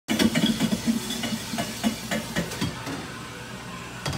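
Clatter behind a coffee-bar counter: a quick run of clicks and knocks, several a second, that thins out after about two and a half seconds, over a steady background hum.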